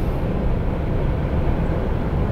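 Steady low drone inside the cab of a Volvo FH truck cruising at motorway speed: engine hum and road noise, unbroken throughout.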